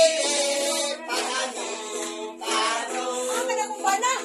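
Group singing with a small guitar played along, the voices holding long notes with short breaks between phrases.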